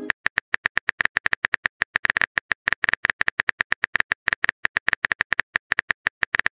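Phone keyboard typing sound effect: rapid, evenly paced key clicks, about eight to ten a second, as a text message is typed out.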